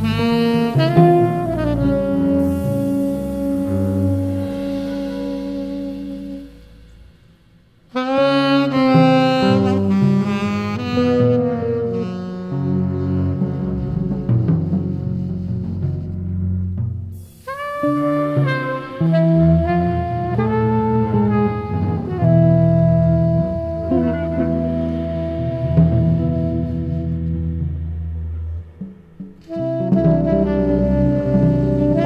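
Live small-group jazz: a saxophone plays long held notes in phrases over double bass. The music fades almost away about six seconds in and comes back at eight seconds, with brief lulls again near seventeen seconds and near the end.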